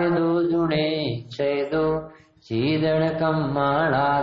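A man's voice chanting a Prakrit scriptural verse (gatha) in long, held melodic notes, with two short breaths about a second in and a little after two seconds.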